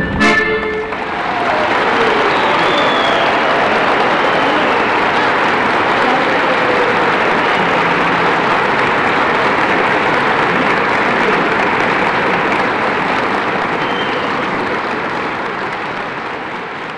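Folk dance music ends on a final accented beat just after the start, and an audience breaks into steady applause that fades slightly near the end.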